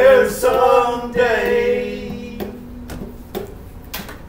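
Voices singing the last line of an acoustic folk song over acoustic guitars, the final chord held and fading out about two seconds in, followed by a few soft taps.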